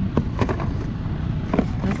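Objects being shifted around in a cardboard box of household items: a few light knocks and clatters of cardboard and plastic, over a steady low rumble.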